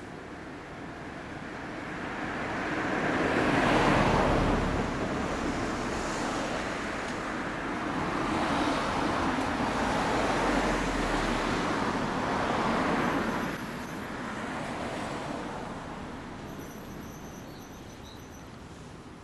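Road traffic passing: vehicles swelling and fading in turn, the loudest about four seconds in, with a short louder burst of sound near the end.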